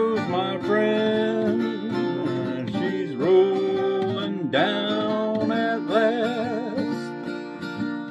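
Steel-string acoustic guitar with a capo, strummed as accompaniment to a slow folk song, with a man singing over it and holding one note with a waver about six seconds in.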